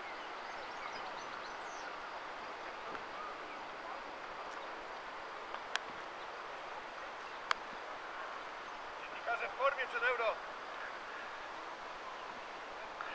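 Steady outdoor background hiss, broken by two sharp clicks in the middle and a short distant voice calling near the end.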